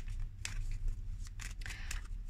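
Tarot cards being handled and shuffled: a few short, crisp papery clicks and snaps, over a steady low hum.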